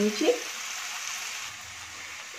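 Chopped mushrooms frying in oil in an open pan, with a steady sizzling hiss.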